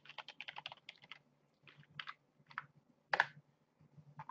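Typing on a computer keyboard: a quick run of about eight keystrokes in the first second, then a few scattered clicks, the loudest a little after three seconds in.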